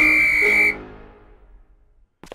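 One steady, high-pitched whistle blast from a coach's whistle, lasting under a second and cutting off sharply, over background music that then fades away.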